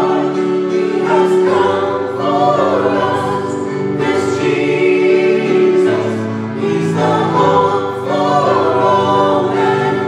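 Mixed vocal group of men and women singing together into microphones, over steady sustained accompaniment notes.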